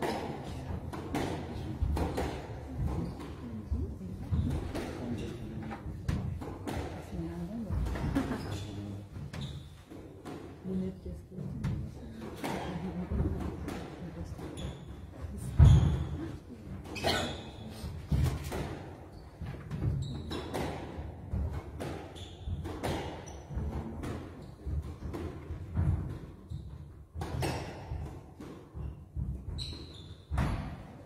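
Squash ball being struck by rackets and hitting the court walls during a rally, a string of irregular sharp knocks with the loudest about halfway through.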